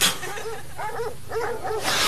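A man's voice making a quick run of short, high-pitched wordless sounds, about a dozen in two seconds, as he is being woken from sleep.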